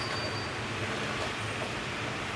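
Steady low background rumble and hiss of room tone, with a faint thin high tone lasting about half a second at the start.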